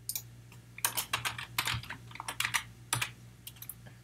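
Typing on a computer keyboard: irregular runs of sharp keystroke clicks as a short word is typed, with brief pauses between runs.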